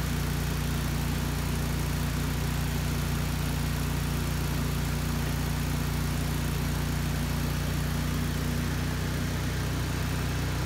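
The gasoline engine of a Lincoln Ranger 225 engine-driven welder-generator running steadily, a few seconds after being cranked.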